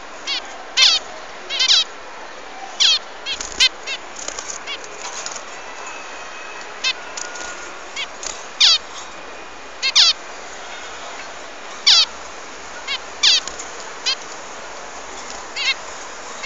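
Bird calling: short, sharp chirps that sweep downward in pitch, repeated at irregular intervals every second or two, with fainter chirps between them over a steady hiss.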